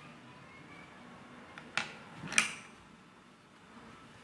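A quiet pause in a small room: faint steady room hiss, broken by two short sharp clicks a little over half a second apart near the middle, the second one louder.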